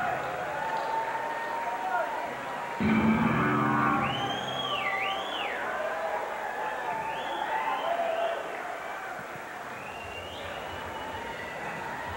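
Concert crowd cheering and calling out, with a high whistle that rises and falls twice about four seconds in. The crowd gets a little louder about three seconds in and thins out over the last few seconds.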